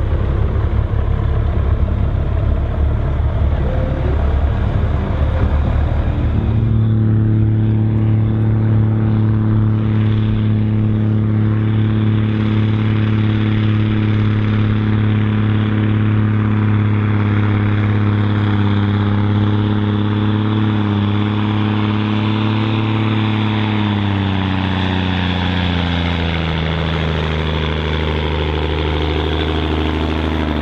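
Scania pulling truck's diesel engine running hard and rough. About six seconds in, a Scania 114G 340's straight-six diesel takes over, held at steady revs under full load while pulling a weight sledge. Over the last few seconds its revs sag steadily as the sledge's load builds.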